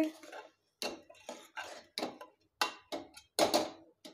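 A metal ladle scraping and knocking against the inside of a pressure cooker while stirring rice and vegetables: a series of about seven short, irregular scrapes and clinks.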